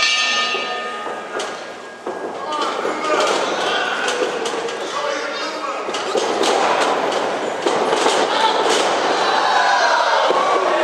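Wrestling crowd noise echoing in a gymnasium hall, with repeated sharp thuds and clangs from the wrestling ring, busiest in the second half.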